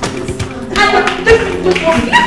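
Background film music under a physical scuffle: scattered sharp taps and thuds of blows and bodies, with brief raised voices about a second in.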